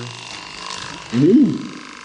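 A single vocal sound about a second in that rises and then falls in pitch over about half a second, over a faint steady hum.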